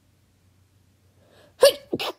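A person with a cold sneezing once, loud and sudden, near the end, after a short breath in; a sneeze that hurt.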